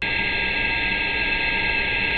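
Loud, steady test noise carrying several strong steady tones, starting suddenly, heard through an unoptimized 3D-printed muffler that leaves its three peaks unsuppressed.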